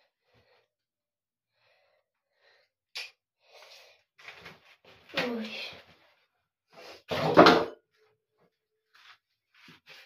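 Short bursts of a woman's non-word vocal sounds, breaths or exclamations, starting about three seconds in. The loudest and sharpest burst comes about seven seconds in.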